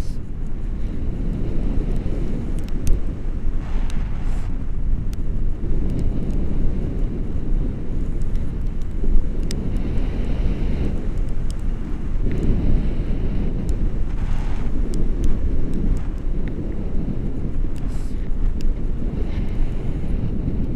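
Wind rushing over an action camera's microphone in paraglider flight: a steady, loud low rumble of buffeting airflow.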